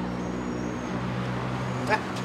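Steady low engine hum of street traffic, with a brief voice-like sound near the end.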